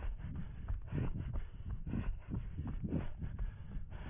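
A runner's footfalls on a dirt and gravel track, picked up through a head-mounted camera as a steady rhythm of low thuds, about two to three a second, over a constant low rumble.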